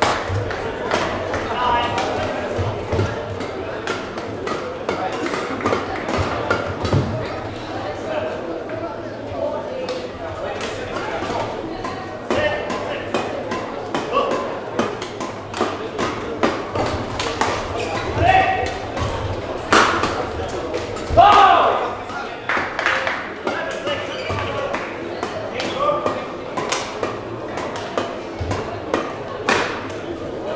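Badminton rallies in a large sports hall: a series of sharp racket-on-shuttlecock hits and thuds of feet on the court, over a steady background of voices, with one louder call about two-thirds of the way through.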